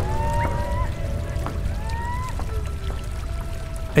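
Rushing water of a shallow forest creek over gravel, under background instrumental music of long held notes that slide up and down.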